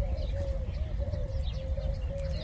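A dove cooing: one low, steady coo that wavers about three times a second, with faint small-bird chirps above it.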